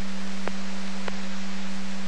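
Scanner receiving a keyed VHF fire dispatch channel with no voice on it: a steady low tone under a constant hiss, with two faint clicks about half a second and a second in.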